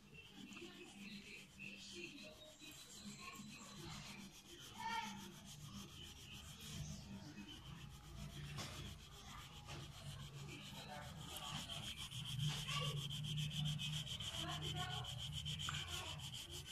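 Brown wax crayon rubbing back and forth on paper, shading lightly over a layer of yellow crayon. Faint, growing louder in the last few seconds.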